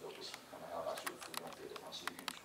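Speech only: a woman lecturing through a microphone in a reverberant hall.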